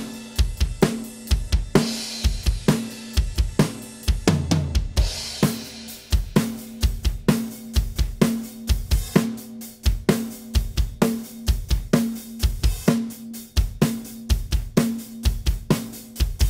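Multitracked acoustic drum kit playing a steady beat of kick, snare, hi-hat and cymbals, with sampled kick and snare hits layered under the recorded drums.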